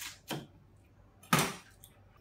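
Kitchen knife and cabbage on a wooden cutting board: a short knock as the blade cuts through the base of a cabbage quarter, then a louder clack about a second and a half in as the knife is laid down on the board.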